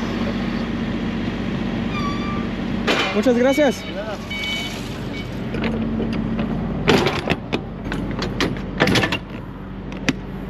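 Semi-trailer rear swing doors being shut and latched: two loud metal clanks about two seconds apart in the second half, over a steady engine hum.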